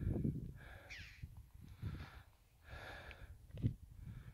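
Soft breathing close to the microphone, about three breaths or sniffs a second apart, over a low rumble of wind on the microphone.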